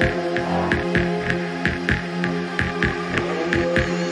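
Electronic background music with a steady beat of about four a second over a held low drone.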